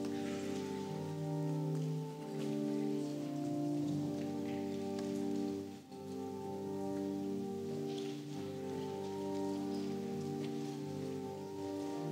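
Church organ playing a slow psalm tune in long held chords that change about every two seconds, with a brief break near the middle.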